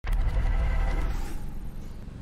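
Outdoor background noise with a deep, steady rumble that starts suddenly and eases off slightly toward the end.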